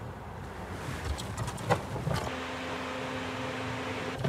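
A car door unlatching with a sharp click, over a low noisy background, then a steady low hum that starts just after the click.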